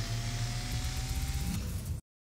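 Sound effect for an animated logo intro: a steady rushing noise over a low rumble, with a faint tone slowly rising under it, cutting off suddenly at the end.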